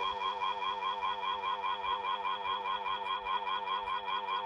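A text-to-speech computer voice droning a long, rapid run of "oh oh oh oh" at one flat, unchanging pitch.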